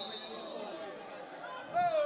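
Faint football-ground ambience: distant shouts of players and spectators over a low murmur, with a thin steady high tone briefly near the start.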